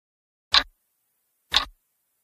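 Clock ticking sound effect: two sharp ticks a second apart, starting about half a second in.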